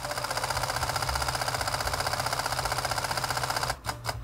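Olympus OM-D E-M1 Mark III mechanical shutter firing a continuous high-speed burst, a rapid, even clicking of about fifteen shots a second. Shortly before the end the clicking stops abruptly: the camera's buffer has filled with raw+JPEG frames, after about four seconds.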